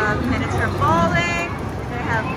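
Arcade ambience: people's voices, unclear and overlapping, over a steady din from the game machines.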